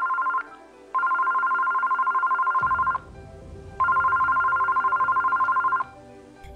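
Telephone ringing: a fast-warbling two-tone electronic ring in rings of about two seconds with short gaps, one ring ending just after the start and two more following, over faint background music.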